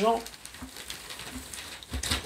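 A black velvet drawstring bag full of small word tokens being shaken and kneaded in the hands: a soft, continuous rustle of the pieces shifting inside the cloth, with a few light clicks near the end.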